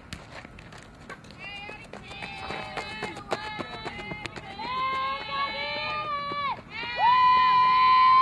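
Voices shouting long, drawn-out calls that build up and grow loudest near the end. Quick sharp clicks on the softball field come through in the first half.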